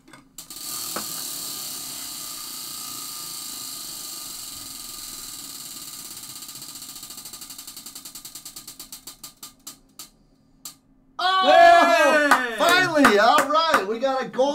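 Prize wheel spinning, its clicker ticking rapidly past the pegs and slowing to separate clicks until the wheel stops about ten seconds in. A loud voice follows near the end.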